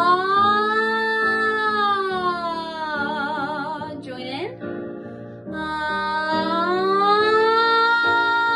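A woman sings an open 'ah' vowel as a vocal warm-up slide, her pitch gliding slowly up and back down, over steady accompaniment chords. The first slide ends with a wobbling vibrato and a quick drop about four seconds in, and a second slide rises from about five and a half seconds.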